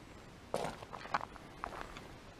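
Footsteps on a gravel and dirt path: a few steps starting about half a second in.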